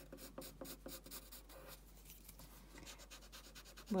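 Graphite pencil sketching on paper: a run of quick, light strokes, with a lull of about a second in the middle.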